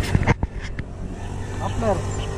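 A few quick clicks and knocks in the first second from handling the lifted seat of a Suzuki Raider 150 Fi motorcycle, over a steady low hum.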